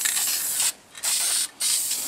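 Krylon ColorMaster aerosol spray paint can spraying touch-up paint in three short bursts: a bright hiss that breaks off twice, once after about two-thirds of a second and again briefly near a second and a half.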